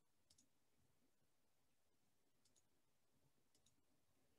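Near silence, broken by faint computer mouse double-clicks three times: about half a second in, about two and a half seconds in, and near the end.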